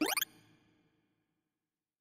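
Sorting visualizer's synthesized tones sweeping rapidly upward in pitch as the verification pass runs through the sorted array. The sweep cuts off about a quarter second in and its tail fades out within about a second.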